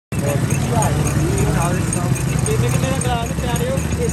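Sugarcane juice crushing machine running, a steady low drone from its drive turning the large belt-driven flywheel, with people talking over it.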